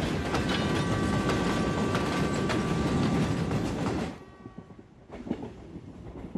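Passenger train passing close on a steel truss bridge: loud rumbling wheel clatter with a steady high ringing tone over it. About four seconds in it drops sharply to a much fainter rattle.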